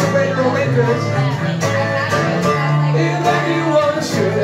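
A live acoustic trio playing a slow blues: strummed acoustic guitar over sustained bowed electric-cello notes, with a saxophone line.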